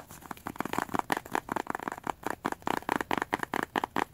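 Fingers rubbing and crinkling a small orange bag close to the microphone, a quick, dense run of crackles and clicks throughout.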